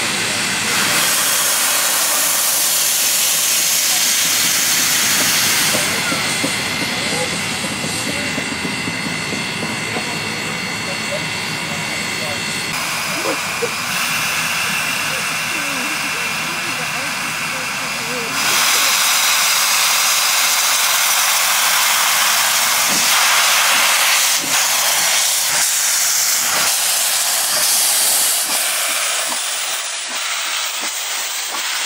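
NZR Ja-class steam locomotive's cylinder drain cocks blowing steam as it moves off slowly: a loud, continuous hiss that changes strength in steps, about six, thirteen and eighteen seconds in.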